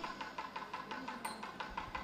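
Faint, quick, evenly spaced percussion ticks, about six a second, each with a short bright ring. A low rumble joins near the end as the temple music swells.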